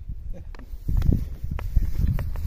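Footsteps on dry grass and ground, starting about a second in, with a few sharp knocks and rustles of the phone being carried.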